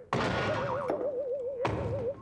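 Cartoon sound effects: a thunk at the start, then a single wavering, warbling tone, with another thud near the end.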